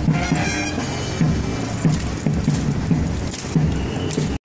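Marching music with a steady drum beat, over the clatter and rattle of drill rifles being spun and slapped in the drill team's hands.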